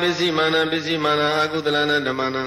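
Male Buddhist Pali chanting, a recitation of protective suttas sung on held, level pitches that step up and down now and then.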